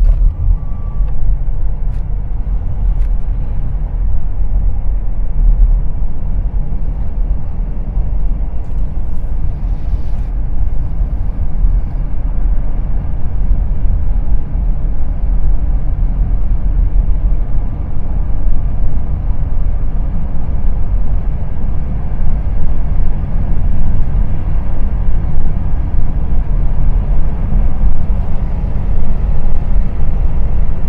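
Steady low rumble of a car driving along a paved road: tyre, engine and wind noise, heaviest in the deep bass and wavering slightly in loudness.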